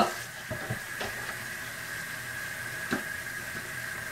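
Kitchen tap running steadily into a stainless steel sink as dishes are rinsed under it, with a few light knocks of dishes: two about half a second in, one at about a second and one near three seconds.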